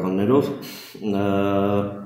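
A man's voice: a short stretch of speech, then one long vowel held at a steady pitch for about a second in the second half.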